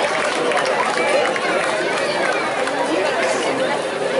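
Crowd chatter: many people talking at once, overlapping voices with no music.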